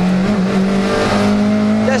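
Rally car engine heard from inside the cockpit, pulling in third gear, its note dipping briefly and then climbing gently after about half a second, over steady road and tyre noise.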